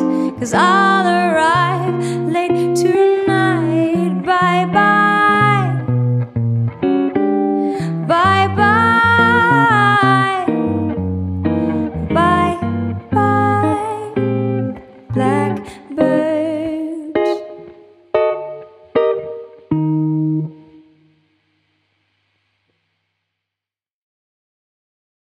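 Jazz ballad played on an archtop electric guitar with a singer's wordless vocal line over it. The music thins to sparse single guitar notes and fades out, leaving silence near the end.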